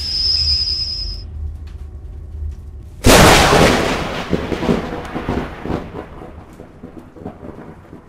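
Intro sound effects: a low rumble under a thin high whine that stops about a second in, then a sudden thunder-like boom about three seconds in that rolls on and slowly fades.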